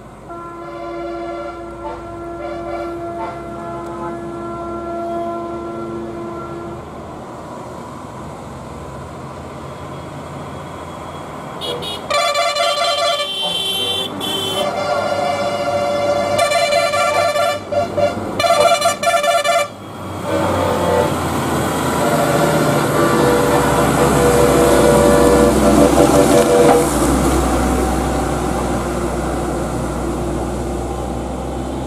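Motorcycle engines pass on a hairpin bend. In the middle stretch, vehicle horns honk in a run of short and longer blasts. After that, a Tata lorry's diesel engine grows into a heavy rumble, loudest a few seconds before the end, as it climbs into the bend.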